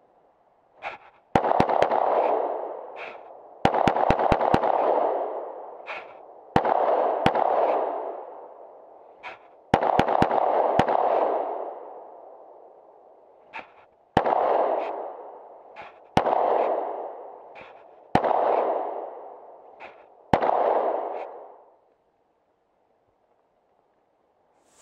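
9mm Glock pistol firing: quick strings of several shots in the first half, then single shots about two seconds apart. Each shot has a long echoing tail.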